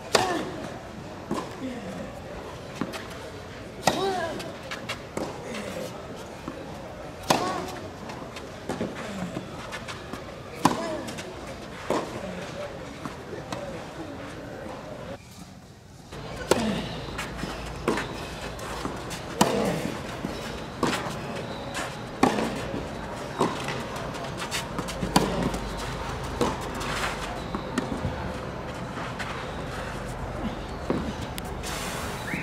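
Tennis ball struck back and forth with rackets in rallies, sharp hits about every one to one and a half seconds, with a short lull about halfway through.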